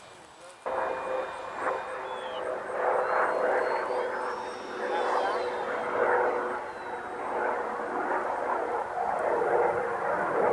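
Steady whine of a radio-controlled L-39 model jet's 80 mm electric ducted fan in flight, with indistinct voices mixed in. The sound begins suddenly just under a second in.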